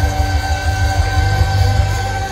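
Live band music from a fiddle, saxophone, guitars and drums, with notes held steady over a heavy bass.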